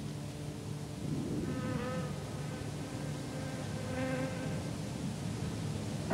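A steady low buzzing drone, with brief wavering higher tones about one and a half seconds in and again about four seconds in.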